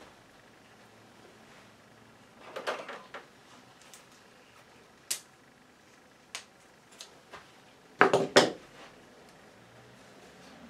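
Scissors cutting a wool thread: a scattering of short, sharp clicks over several seconds, then two louder clacks close together near the end.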